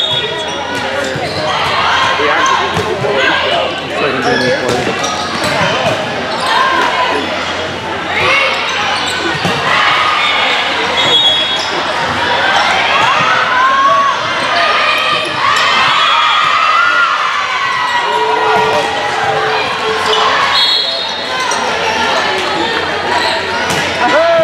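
Indoor volleyball rally: the ball being hit with sharp smacks, shoes squeaking on the court floor, and players and spectators calling out, all echoing in a large gym.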